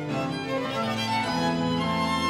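Early Baroque instrumental passage: violins playing lines over an organ continuo, with notes changing every fraction of a second.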